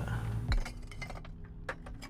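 Discarded glass bottles being gathered by hand, clinking against each other: a dull knock about half a second in, then a few light, sharp clinks.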